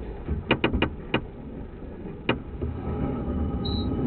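Handling noise from a drain inspection camera setup. There are four sharp clicks and knocks close together in the first second, and one more a little after two seconds, over a low steady rumble and a faint electrical hum.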